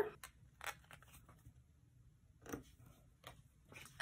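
Faint rustling and a few light ticks of a small paper sticker being peeled from its sheet and pressed onto a planner page.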